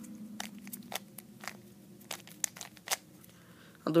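A 3x3 Rubik's cube being turned rapidly by hand: a quick, irregular run of plastic clicks and clacks as its layers snap round.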